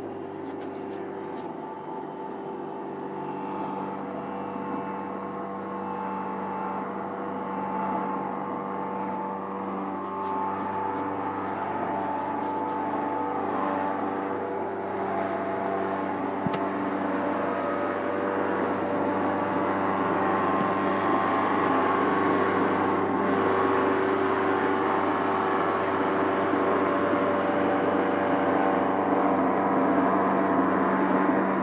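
Electric porcelain tile cutting machine running, its motor and water-cooled blade giving a steady hum of several tones over a grinding noise. The sound grows gradually louder as the blade cuts into the tile at a 45-degree angle.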